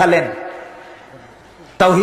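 A man preaching in Bengali: a word trails off at the start, a pause of about a second and a half follows with only faint background noise, and his speech starts again near the end.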